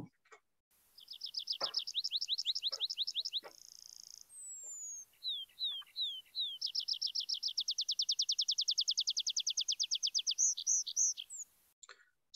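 Tree pipit song given in flight: a softer opening trill, a short buzzy note, a falling whistle and four down-slurred notes, then a long loud fast trill and a few slurred notes to finish.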